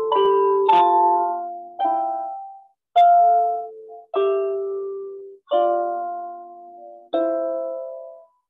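Slow solo instrumental music: struck or plucked notes and chords, about seven of them, one every second or so, each starting sharply and ringing as it fades, some cut off abruptly.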